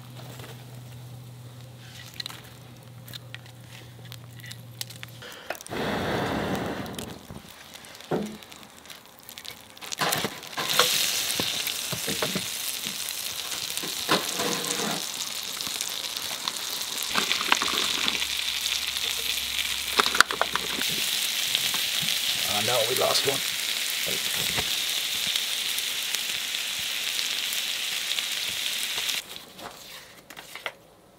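Food frying in a long-handled pan set on campfire coals. Handling noises and a few knocks come first, then a loud, steady sizzle from about a third of the way in that cuts off sharply near the end.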